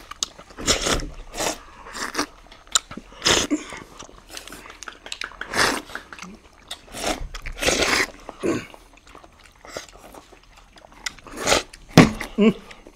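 People slurping and sucking up kheer (rice pudding) straight from their plates with their mouths, no hands. The sound comes in short, irregular bursts, a dozen or so.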